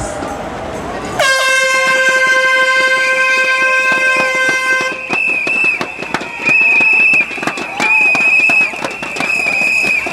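A starting air horn sounds one long blast of about four seconds, beginning about a second in, sending off a race-walking race. After it stops, a higher-pitched tone sounds in short repeated blasts over crowd voices and the clatter of clapping thundersticks.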